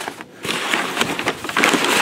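Crumpled brown kraft packing paper rustling and crinkling as a hand pushes through it in a cardboard box, fainter at first and loud and continuous from about half a second in.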